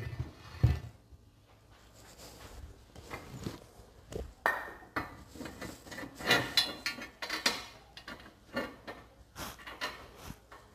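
Steel log-grapple parts knocking and clanking as they are handled on a wooden workbench: a heavy knock about a second in, a run of sharp metal clanks in the middle, and a few lighter knocks near the end.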